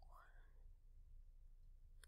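Near silence: faint room tone with a low hum, and a brief faint breath at the very start.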